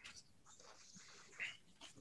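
Near silence: room tone, with one faint, brief sound about a second and a half in.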